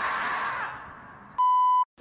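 A scream from the screaming-marmot meme clip, trailing away, then a steady, high electronic beep about half a second long, added in the edit, that is the loudest sound here.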